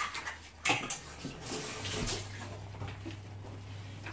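Broth of fish and vegetables simmering in a frying pan, a steady bubbling, with a short knock about half a second in.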